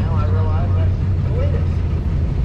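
Mercury Marauder's V8 running steadily at low revs, a constant low drone heard from inside the cabin.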